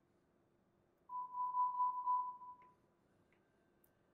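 Dräger Perseus A500 anaesthesia workstation sounding a single steady electronic alarm tone as its alarm volume is set to maximum. The tone starts about a second in, lasts under two seconds and fades out.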